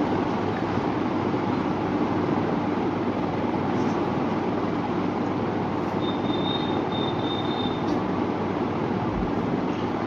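Steady, even background noise of a mosque hall during the silent bowing of congregational prayer, with no voices. A faint thin high tone sounds for about two seconds past the middle.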